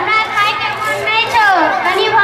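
A high-pitched voice speaking Maithili stage dialogue into a handheld microphone, heard through a loudspeaker system, its pitch rising and falling.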